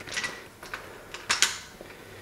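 Sliding glass balcony door being unlatched and pulled open: sharp clicks and rattles from the latch and frame, in two bursts, one at the start and one a little over a second in.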